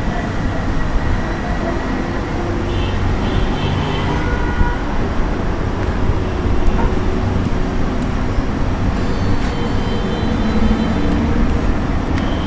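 Steady low background rumble with a few faint clicks scattered through it.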